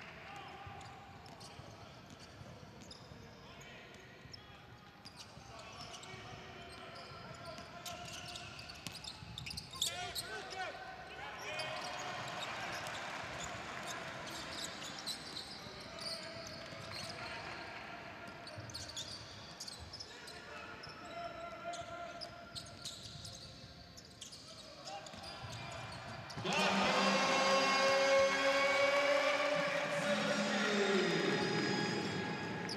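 A basketball dribbling on a hardwood court, with crowd voices echoing in an arena hall. About three-quarters of the way through, loud arena music starts suddenly after a home three-pointer.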